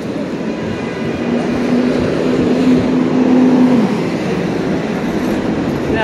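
City street traffic noise: a continuous rumble, with a steady vehicle hum that builds from about a second in and drops away near the four-second mark.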